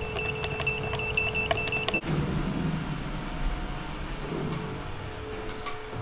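A machine running outdoors. For about two seconds there is a steady whine with a high tone and light ticking, which cuts off suddenly. A low steady engine rumble follows.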